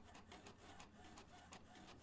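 Desktop printer printing a page, heard faintly, with a rapid, even ticking of the print head.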